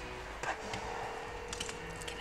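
A few light clicks and taps from plastic door-trim parts being handled, over a faint steady hum.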